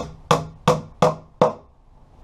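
Hammer driving a nail into a plywood shelf: five sharp blows, about three a second, then it stops.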